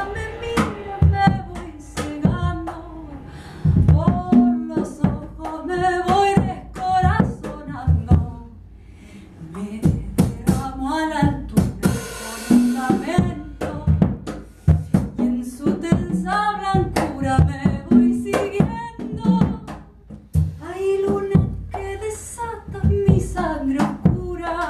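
Live chamber ensemble playing a folk song: a female voice singing over drum and cymbal strikes, with cello and piano, in a small room. The music eases off briefly about eight seconds in, then picks up again.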